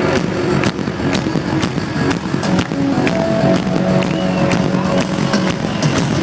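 Live synth-rock band music at a stadium concert, heard loud from within the crowd, with a steady drum beat of about two strokes a second under sustained keyboard tones.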